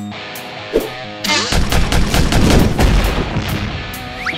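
Burst of rapid machine-gun fire sound effect, starting a little over a second in and lasting about two and a half seconds, over background music.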